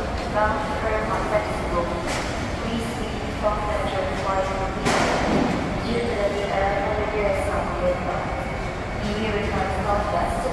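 Indistinct voices and chatter in a large terminal hall over a steady low background hum, with a short burst of noise about five seconds in.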